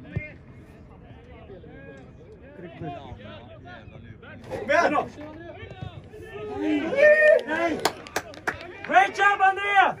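Football players shouting to each other across an outdoor pitch: faint calls at first, then loud shouting from about halfway, peaking near the end. A sharp thump sounds right at the start, and several sharp clicks come in the last two seconds.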